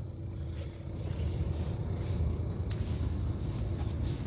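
Steady low rumble of the Volvo B11R coach's diesel engine idling, heard from inside the passenger cabin, with a couple of faint clicks late on.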